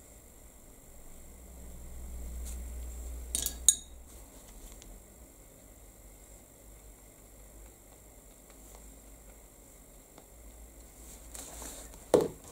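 Quiet room tone while a paintbrush dabs paint onto card. About three and a half seconds in, a short clink of hard objects knocking together breaks the quiet.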